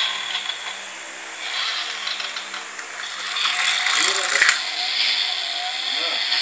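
Small battery-powered toy car's electric motor and plastic gears whirring as it drives, the whir swelling for a second or two with a sharp click about four and a half seconds in. A steady low hum runs underneath.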